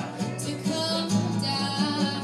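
Live acoustic guitar being strummed, accompanying a woman singing held notes into a microphone.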